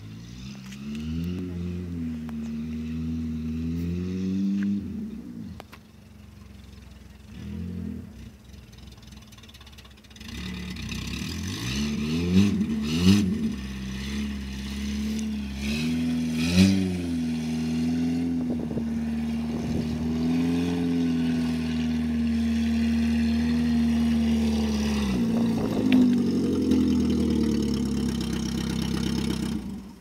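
Volkswagen Golf Mk3 hatchback's engine as the car is driven over a grass field, revving up and down through the gears. It drops quieter for a few seconds, then holds a steady drone with a few loud knocks along the way, and cuts off at the end as the car stops.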